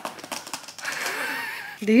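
A quick run of light clicks and taps, fingernails tapping on the box's panel and cardboard packaging, in the first half second, followed by a faint breathless voice.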